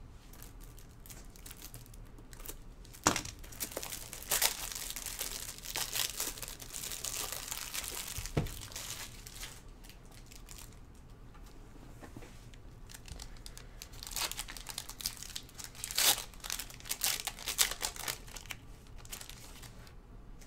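Foil trading-card pack wrapper crinkling and being torn open, with cards being handled. It comes in two spells of dense crackling with sharp clicks, a few seconds in and again near the end.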